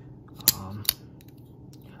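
Benchmade Mini Presidio II folding knife worked by hand: two sharp metallic clicks about half a second apart as the blade is snapped open and shut.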